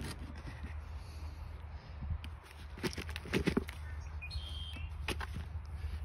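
Wet, husk-covered black walnuts tumbling out of a plastic pot onto potting soil and being shifted by hand: scattered dull knocks and clicks with soft rustling.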